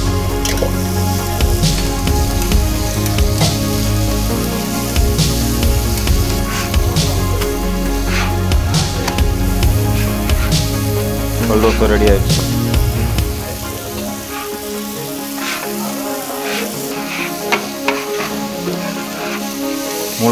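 Food frying and sizzling on a large flat street-food griddle, with the clicks and scrapes of a metal spatula on the hot plate. Background music plays over it and cuts out about two-thirds of the way through.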